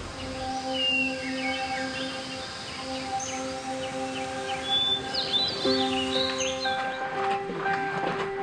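Background music of held, sustained notes, with small birds chirping over it from about a second in until near the end.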